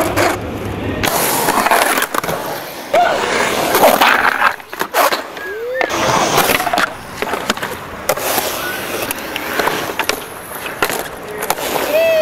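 Skateboard wheels rolling over a concrete bowl, a steady rumble broken by several sharp clacks of the board and trucks hitting the concrete.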